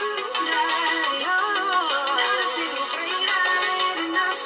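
Electronic dance track with a gliding vocal melody playing through an HTC U11 phone's built-in speakers, thin with almost no bass.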